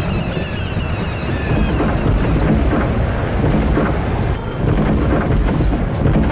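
A loud, continuous rumbling noise, heaviest at the low end, with a brief dip just past four seconds in.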